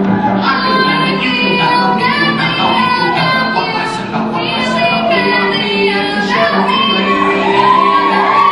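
A woman singing a show tune into a microphone over grand piano accompaniment. She holds a long note with vibrato near the end.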